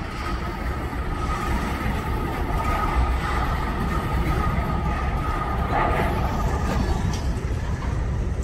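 Freight train in a rail yard: a steady low rumble of diesel locomotives and rolling freight cars, with a steady high whine over it.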